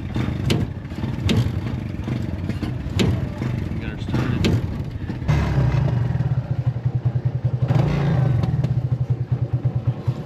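Motorcycle engine of a sidecar tricycle running, with the sidecar clattering and knocking over bumps. From about five seconds in the engine grows louder and throbs rapidly.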